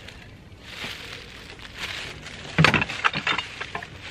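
Plastic bag rustling, then a clatter of dishes and broken glass knocking together as they are rummaged through in a plastic tote, with a quick run of sharp clinks a little past halfway.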